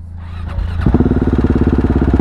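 A 2017 KTM 690 Duke's single-cylinder engine, breathing through an Akrapovič exhaust with a GPR decat pipe, idles low, then is opened up sharply about a second in. It holds a loud, steady, fast pulsing beat as the bike pulls away.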